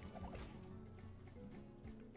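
Faint online slot game music with quiet chimes and effects as the reels play out.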